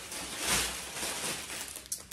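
Rustling and handling noise of a small plastic bag being picked up, loudest about half a second in.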